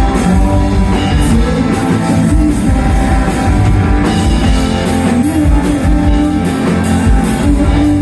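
Live rock band playing loud: electric and acoustic guitars, bass and drum kit, with the drums keeping a steady beat.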